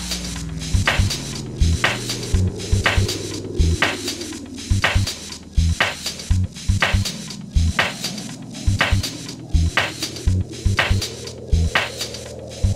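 Jazzy deep house music: sharp percussion hits at a steady pulse over short, punchy bass notes, with a filtered synth sound that sweeps down in pitch and then climbs back up toward the end.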